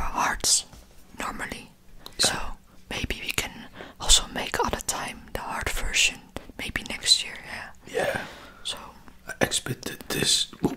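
Whispered speech, with breathy, hissing syllables.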